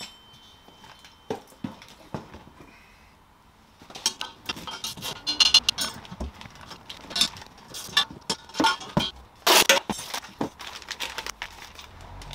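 Light metallic clinks, taps and knocks as a Tomei stainless exhaust header is handled on its cardboard box while its shipping brace and packed parts are removed. It is fairly quiet for the first few seconds, then the clinks and clicks come thick and irregular, with rustling of plastic parts bags near the end.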